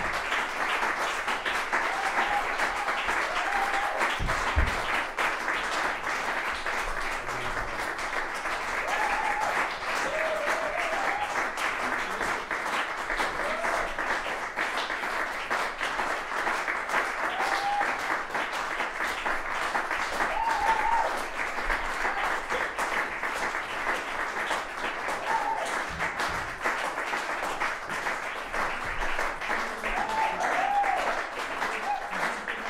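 Audience applauding steadily, a dense even clapping that holds at one level throughout.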